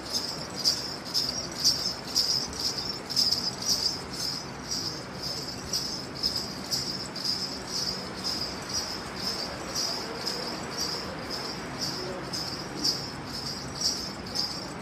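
Ghungroo, strings of small brass ankle bells, jingling in an even walking rhythm of about two shakes a second.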